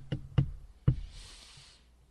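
Four short, sharp knocks within the first second, then a soft breathy hiss.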